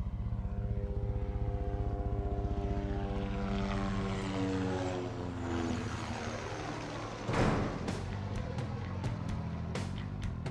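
Propeller aircraft flying low overhead: a pulsing engine drone that falls in pitch as it passes, then fades. A brief rush of noise cuts in about seven seconds in.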